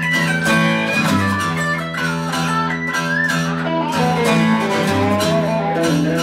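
Blues duo of acoustic and electric guitar playing an instrumental break: the acoustic guitar strums a steady rhythm while the electric guitar plays a lead line with bent notes.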